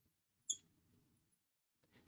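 Near silence with one short, faint squeak about half a second in: a marker drawing on a glass lightboard.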